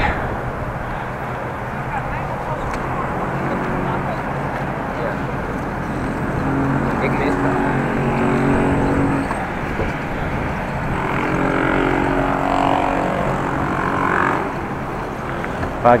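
Steady rush of wind and tyre noise on a microphone carried on a moving bicycle. A faint pitched hum comes in twice, about six and eleven seconds in.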